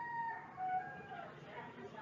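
A faint distant animal call in the background: one held note that fades out about half a second in, followed by two short, lower notes.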